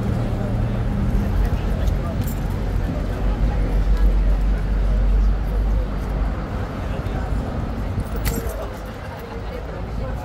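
Low, steady rumble of road traffic, loudest about four to five seconds in, under indistinct voices of people nearby, with a couple of brief clicks.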